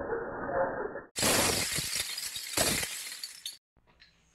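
Loud, dense clatter of many metal bottle caps pouring onto a glass tabletop. It starts suddenly about a second in and cuts off just before the end. A snatch of intro music plays before it.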